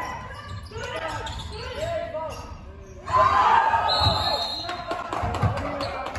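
Basketball bouncing on an indoor court floor, a few dull thumps echoing in a large sports hall, under players' voices calling out, loudest a little past halfway. A brief high squeal comes about two-thirds of the way through.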